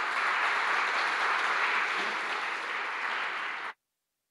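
Audience applauding steadily, cut off abruptly near the end.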